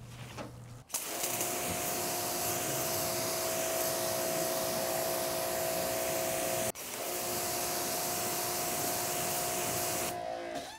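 Greenworks GPW2000-1 electric pressure washer spraying a rinse jet onto a car hood: a steady hiss of water with the pump motor's whine. It starts about a second in, cuts out for a moment near seven seconds as the trigger is let go, then runs again.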